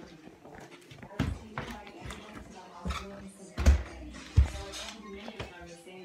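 A few short dull thumps, such as footsteps or the phone being knocked while moving, over faint background speech and music.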